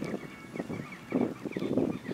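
Outdoor field ambience: soft gusts of wind on the microphone, with faint small bird calls repeating throughout.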